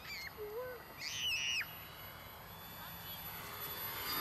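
A few short high-pitched calls that bend in pitch. The loudest and highest comes about a second in and lasts about half a second.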